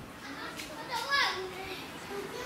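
Young children's high-pitched voices calling out in the background, no clear words, loudest about a second in.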